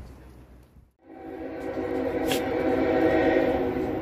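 A train coming onto the railroad bridge: from about a second in, a steady multi-pitched tone sounds and grows louder.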